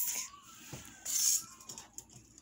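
A short swish of a tarot card being drawn and slid across the deck, just past the first second.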